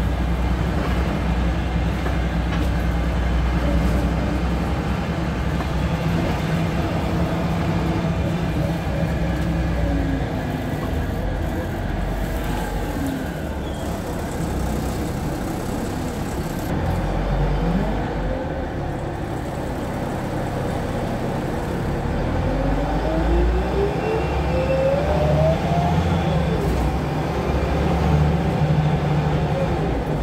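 Cabin sound of a Wright-bodied Volvo single-deck bus on the move: steady engine and road rumble, with a rising whine in the second half as it gathers speed.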